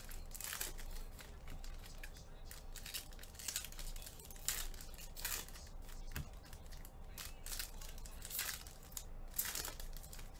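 Foil trading-card pack wrappers crinkling and tearing, with cards rustling as they are handled, in quick irregular crackles.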